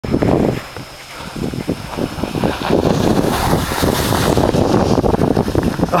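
Wind buffeting the microphone of a camera carried by a skier moving downhill, a rough rumble that comes and goes, with the hiss of skis sliding over snow.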